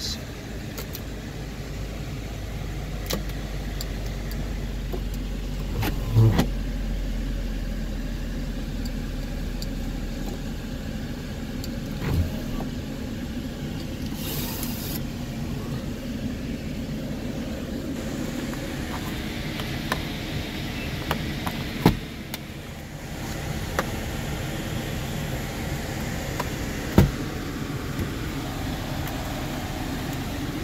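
Steady idle hum of a 2015 Audi S5's 3.0 TFSI V6, heard from inside the cabin with the climate fan running. A few sharp clicks and an electric motor whirr come from the power sunroof being worked.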